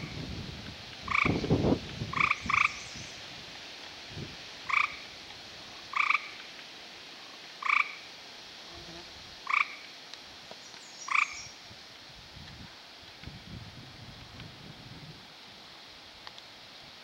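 Short chirping calls from a frog or toad, eight of them at uneven intervals of one to two seconds, stopping about twelve seconds in. A low thud comes about a second and a half in.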